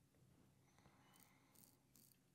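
Faint scraping of a Max Sprecher 8/8 Spanish-point straight razor cutting five days' beard stubble through lather: a few short rasping strokes in the second half, over a low room hum.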